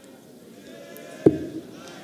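Faint murmur of an arena crowd, broken just over a second in by a single sharp thud: a steel-tip dart landing in the bristle dartboard.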